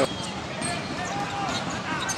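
Steady crowd noise in a basketball arena during live play, with a basketball being dribbled on the court.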